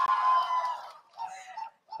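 Audience reacting with a high, drawn-out "ooh" that slowly falls in pitch and fades out about a second in, followed by faint murmuring.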